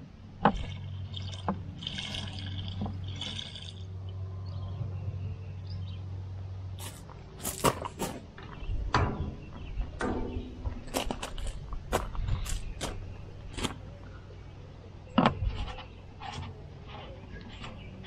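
Fuel running from a nozzle into the filler neck of a Kubota BX23S subcompact tractor's fuel tank, over a steady low hum that stops about seven seconds in. After that come a series of sharp clicks and knocks as the nozzle and filler cap are handled.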